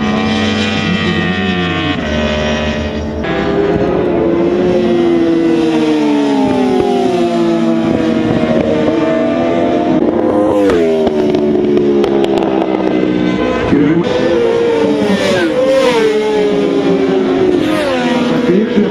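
Racing sportbike engines at high revs, their pitch climbing and dropping again and again as the bikes accelerate, shift gears and brake for the turns.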